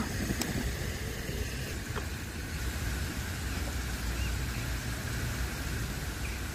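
Steady outdoor background noise with a low rumble, and a faint click about half a second in and another about two seconds in.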